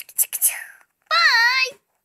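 A child's voice: quick breathy, whispered sounds, then one wavering high note held for about half a second.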